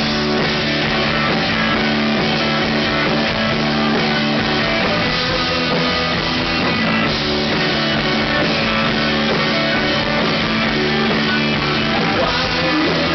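Live rock band playing loud: electric guitar chords ring over a drum kit, with maracas shaken along.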